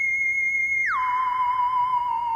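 Eerie theremin-like electronic tone: a high note held for about a second, then sliding down about an octave and held with a slight wobble.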